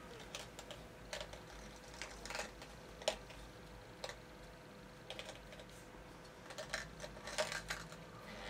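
Irregular light clicks and taps of fingers working at the plastic stopper of a small bottle, a tricky stopper that won't come off.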